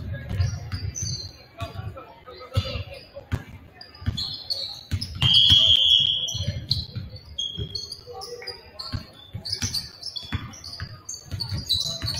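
A basketball dribbled on a hardwood gym floor, with sneakers squeaking and a referee's whistle blown once for about a second near the middle; voices talk in the background of the hall.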